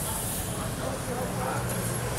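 Steady outdoor background noise with a low hum and faint voices.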